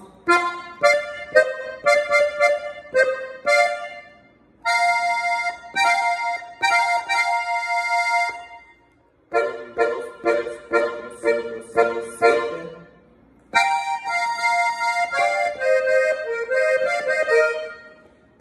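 Piano accordion's treble keyboard played: phrases of short, quick notes alternating with held chords, with brief pauses between phrases.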